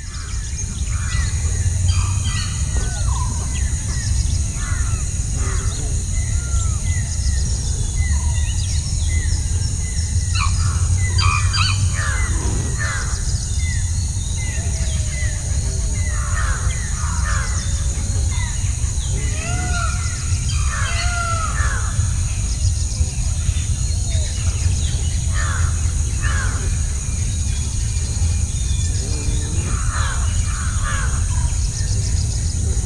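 A mix of wild birds calling throughout, many short chirps and whistled notes with some crow-like calls among them, over a steady high insect drone and a low steady rumble.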